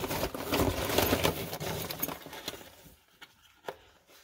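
Hands rummaging through loose die-cut cardboard packing pieces in a cardboard box, a dense crackly rustle that fades out after about two and a half seconds, then a single click near the end.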